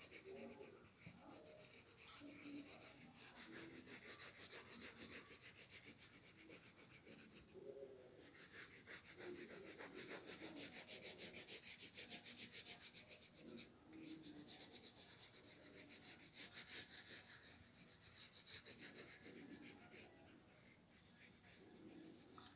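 Faint, rapid scratching of a green colour pencil shaded back and forth across a paper page, many strokes a second, with two brief pauses.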